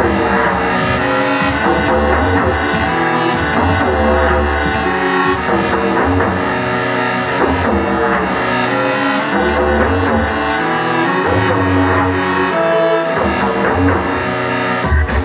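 Electronic music played live from Ableton Live: layered synth tones over a deep bass that drops out and comes back every few seconds.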